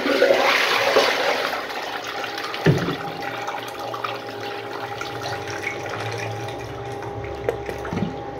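Miniature model toilet flushing: water rushes loudly into the small bowl, then keeps swirling and draining down the outlet more steadily, with a short thump about three seconds in.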